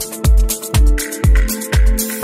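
Progressive house music: a four-on-the-floor kick drum about two beats a second under sustained synth chords, with hi-hats between the kicks. A higher synth note comes in about halfway through.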